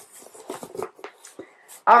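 Cardboard clothing box being opened by hand: a run of soft, irregular rustles, scrapes and light taps from the flaps and packaging.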